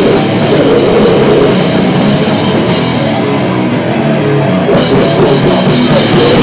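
A live hardcore/grindcore band playing loud, with distorted guitar, bass and a drum kit. The cymbals drop out for about a second near four seconds in, then crash back in.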